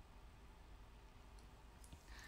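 Near silence: room tone, with a couple of faint short clicks in the second half.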